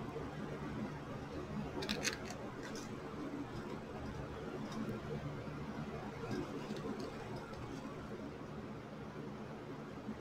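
Quiet handling sounds: a few light clicks and rustles around two seconds in as hands press a ribbon bow onto a glass vase, over a low steady hum.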